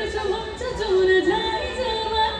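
A woman sings a Nepali song live into a microphone, her voice sliding and wavering in quick ornaments between held notes.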